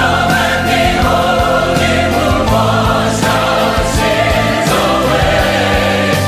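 Sacred choral music: a choir singing long held chords over orchestral accompaniment with a full bass line, the chords changing a couple of times.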